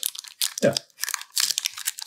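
Pokémon XY Evolutions foil booster pack wrapper crinkling in the hands as it is worked open, a quick irregular run of short rustles.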